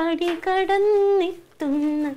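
A woman's voice in long, drawn-out, sing-song phrases, held on sustained pitches, with a short break about one and a half seconds in.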